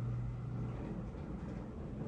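A steady low hum with faint background noise: room tone between sentences of narration.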